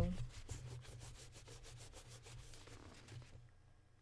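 Fingertip rubbing liquid lipstick on skin in quick, even strokes, about eight a second, that stop about three seconds in.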